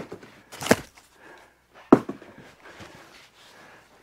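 A steel Wood-Mizer cant hook being handled and lifted: a few light handling knocks and rustles, with one sharp click about two seconds in.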